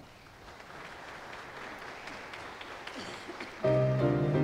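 Congregation applauding, the clapping swelling gradually after a choir anthem. About three and a half seconds in, a keyboard abruptly begins playing sustained chords.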